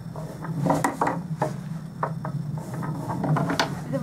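Irregular light taps and clicks on a wooden bench top, a dozen or so over four seconds, over a steady low hum.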